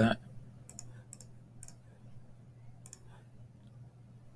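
Computer mouse button clicking, about seven short clicks, mostly in quick pairs, in the first second and a half and again about three seconds in, over a faint steady low hum.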